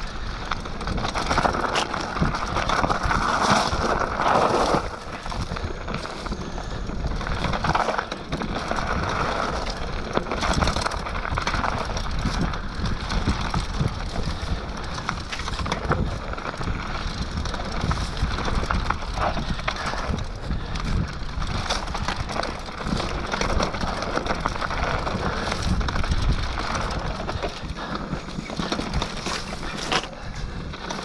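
Mountain bike descending a rough dirt trail at speed: a continuous rush of tyre noise over dirt and stones, wind on the microphone, and frequent sharp rattles and knocks from the bike over bumps.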